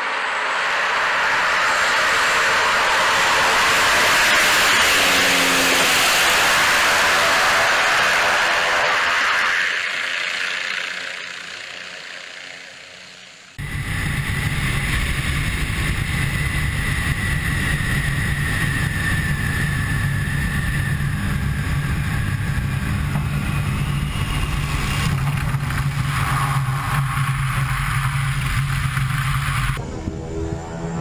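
Single-engine propeller bush plane running at full power on its takeoff roll along a wet grass airstrip, loudest a few seconds in as it passes close, then fading as it climbs away. After a sudden change about halfway through, the steady drone of the engine and propeller is heard from a camera mounted on the plane in flight, with a high whine over it.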